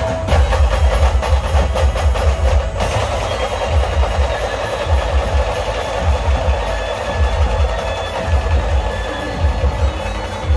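Loud amplified band music in dhol-tasha style, played through a truck's loudspeaker stacks, with heavy booming bass beats in a steady rhythm. A fast clattering drum roll runs through the first three seconds or so, then eases into the dense beat.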